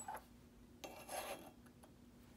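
Pistol rear sight module scraping against the slide as it is set into place: a faint click at the start, then a brief rub about a second in.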